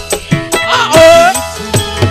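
Live campursari band music over a PA system: a woman singing a bending melody line, with hand-drum strokes and band accompaniment underneath.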